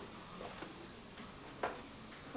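Faint footsteps: two light taps about a second apart over quiet room tone.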